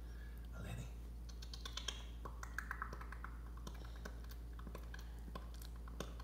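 Faint, irregular little clicks and crackles of a toddler eating a piece of bread, handling it on the plate and chewing, thickest in the first half, over a steady low hum.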